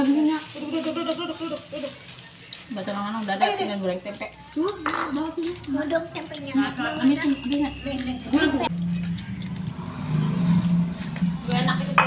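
Indistinct voices talking, with a few light clinks and taps.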